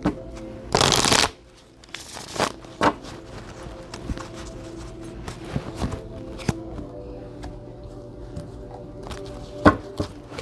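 A new tarot deck being shuffled by hand: a rushing burst of shuffling about a second in, a shorter one near two seconds, then scattered clicks and slaps of cards. Faint music plays in the background.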